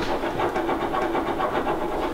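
Breath blown steadily into a glass of red wine, a low airy rush with a faint fast flutter.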